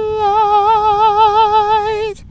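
A solo voice singing unaccompanied, holding one long high note with an even vibrato.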